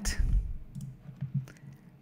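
A few sharp computer mouse clicks, spaced out, over a faint low murmur.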